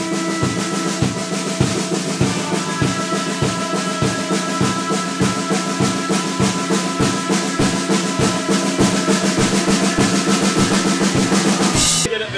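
Post-punk rock band playing: drum kit keeping a steady beat of kick and snare under sustained electric guitar and bass through amplifiers. The music stops abruptly at the end.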